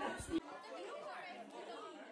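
Indistinct chatter of several people talking at once in a room, with an abrupt cut in the sound shortly after the start.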